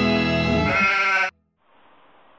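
The end of a short intro jingle on distorted electric guitar, held with a wavering, bleat-like tone, cutting off abruptly about a second and a half in, then faint room hiss.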